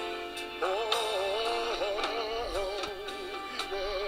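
Recorded gospel song playing back from a computer, with a sung vocal line with vibrato coming in about half a second in over the backing.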